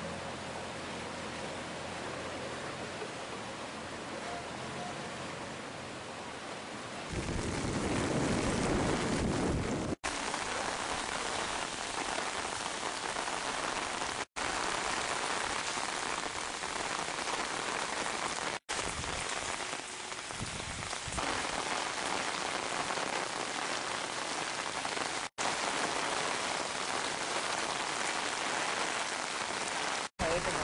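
Steady hiss of heavy rain falling, swelling louder and deeper for a few seconds about seven seconds in. The sound cuts out for an instant four times, where one field recording is spliced to the next.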